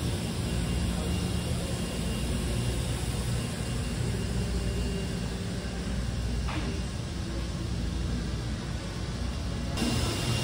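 Steady low hum and rumble of a large engine-repair shop hall: ventilation and machinery noise with no single sound standing out, and a brief faint sound about six and a half seconds in.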